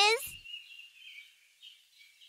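A voice finishing a word right at the start, then faint background birdsong with small chirps.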